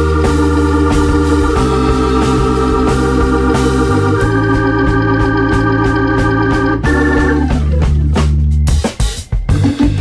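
Background music: held chords over a low bass, the chord changing every couple of seconds. About nine seconds in the held chords stop and drum hits take over.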